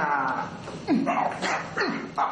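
Dog-like yelping cries. Two short yelps each drop sharply in pitch, about a second apart.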